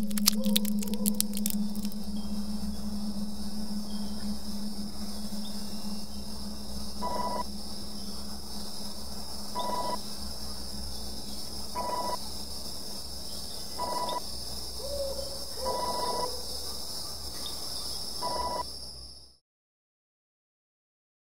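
Droning ambient sound: a steady low hum under a high, even hiss-like drone, with a brief crackle at the start. From about seven seconds in, a short tone sounds six times, roughly every two seconds. It all cuts off abruptly shortly before the end.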